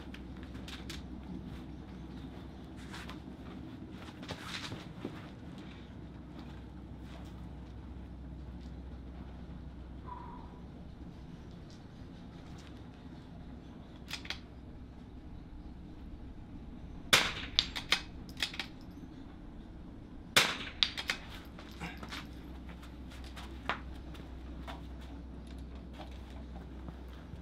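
.22 LR bolt-action rifle fired twice from prone, two sharp cracks about three seconds apart, each followed by a few lighter clicks as the bolt is worked. Softer knocks and rustles come earlier, as the shooter gets down on the mat.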